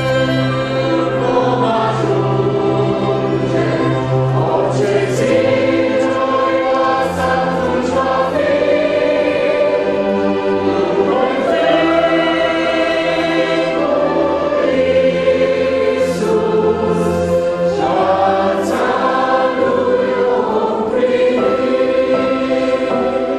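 A hymn sung by several voices over keyboard accompaniment with a steady bass line; violin and clarinet play along at first, then drop out.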